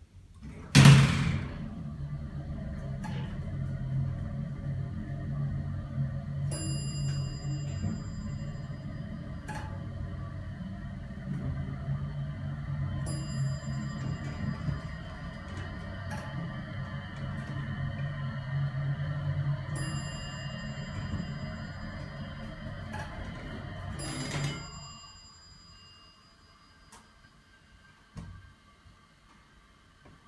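A Dover Oildraulic hydraulic elevator's power unit starts with a jolt about a second in and runs with a steady low hum while the car travels, then cuts off suddenly near the end. Short high-pitched tones sound about every six to seven seconds over the hum.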